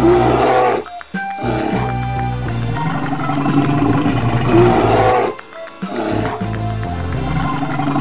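A bear roaring twice, about four and a half seconds apart, over children's background music with a steady beat.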